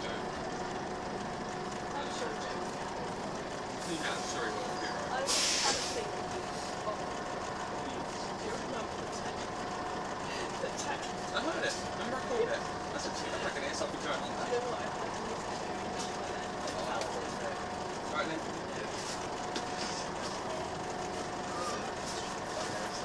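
Inside a Volvo B10BLE single-decker bus: the diesel engine runs steadily with a faint whine as the bus slows and stands at a stop. A short hiss of released air, typical of the air brakes, comes about five seconds in.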